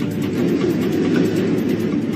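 Steady low rumble of a jet airliner in flight, as heard inside the cabin.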